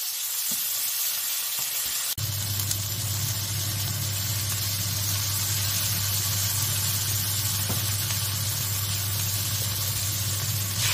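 Cashews, cherry tomatoes and chicken sizzling in oil in a frying pan, a steady hiss. From about two seconds in, a steady low hum sits under the sizzling.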